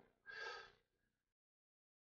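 A man's short, faint breathy exhale, like a sigh, about half a second long.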